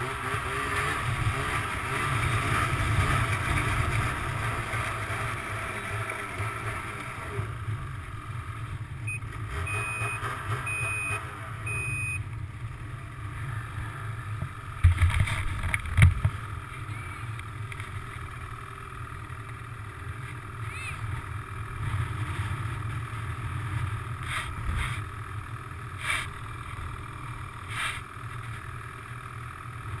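Ski-Doo Renegade 600 snowmobile engine running at low revs, steady throughout, with voices over it in the first few seconds. A few short high beeps come about ten seconds in, and two loud knocks around the middle.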